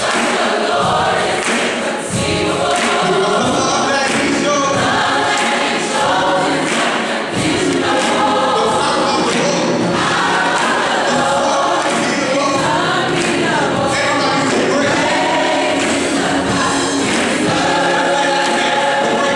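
Large gospel choir singing with a live band accompanying on guitar, keyboard and drums.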